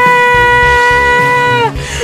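A woman singing one long, steady held note over a backing track with a low pulsing beat; the note dips slightly and stops about three-quarters of the way through.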